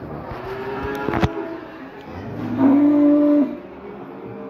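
A cow lowing once, a steady held moo about a second long in the second half. A sharp knock comes about a second in.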